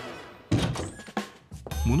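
A deep, trailer-style impact hit about half a second in, ringing out, followed by a shorter second hit just after a second, while a chiming music cue fades away.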